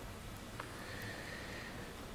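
Quiet room tone in a pause, with a faint click about half a second in, then a faint thin high tone lasting about a second.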